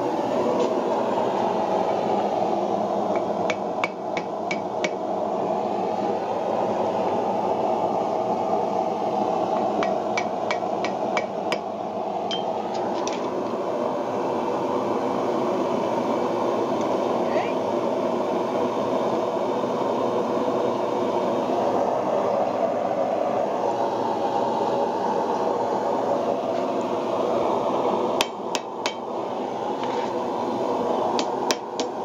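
Hand hammer striking red-hot wrought iron on an anvil in short runs of quick blows, about four seconds in, around ten seconds in, and again near the end. Under the blows is a steady rushing noise from the forge running.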